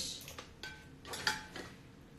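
A few faint clinks and knocks, spread through the two seconds, two of them with a brief ringing tone.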